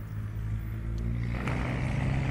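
Road traffic moving close by: the engines of cars and a minibus make a steady low hum that grows louder about one and a half seconds in.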